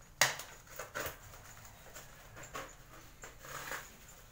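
Plastic parcel wrapping crinkling and crackling as it is handled and opened by hand, with one sharp snap about a quarter second in and scattered short crackles after.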